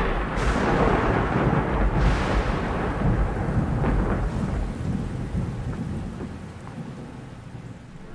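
Thunderstorm: a rolling peal of thunder with heavy rain, with a few sharp cracks in the first half, the rumble slowly dying away toward the end.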